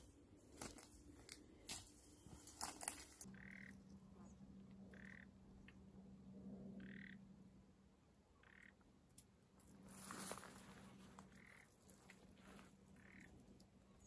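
Faint rustling and clicks at first, then short, faint animal calls, about one every one and a half to two seconds, over a soft rushing swell about ten seconds in.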